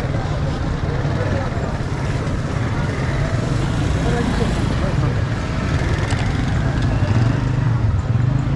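Busy street-market ambience: motorcycle engines running close by under the chatter of a crowd, with a few short clicks near the end.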